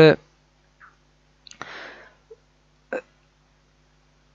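A man's drawn-out "uh" trails off, then a near-silent pause holding a soft breath and one brief mouth or throat sound about three seconds in.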